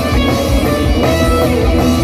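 Live rock band playing loudly: electric guitars over a drum kit with a regular kick-drum beat.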